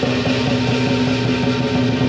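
Lion dance percussion band playing: drum with clashing cymbals and gong, the metal keeping up a steady ringing tone under rapid strokes.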